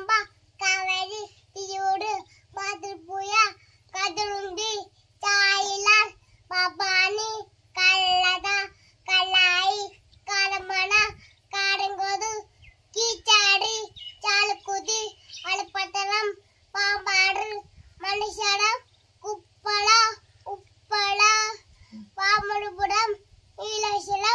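A toddler girl's high, sing-song voice reciting a list in short chanted phrases, about one a second with brief pauses between them.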